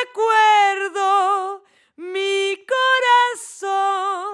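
A woman singing long held notes with a wide vibrato, in short phrases broken by brief pauses.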